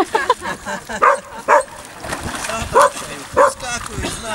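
A dog barking: four short barks in two pairs, loud over people's voices.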